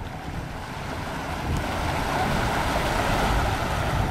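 A motorboat running close by: the 1991 Skipjack 26's Volvo 5.7 engine rumbling under the rushing wash of its hull and wake, with wind buffeting the microphone. The sound grows steadily louder.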